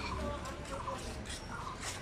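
A few short calls from domestic fowl, spaced about half a second apart.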